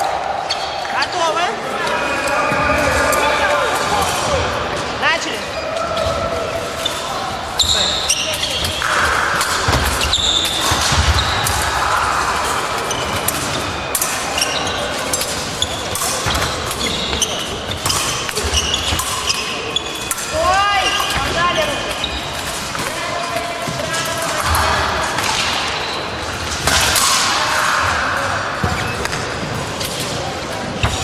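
Repeated thumps of fencers' feet stamping and lunging on the piste, with sharp clicks, mixed with voices and shouts in a large sports hall.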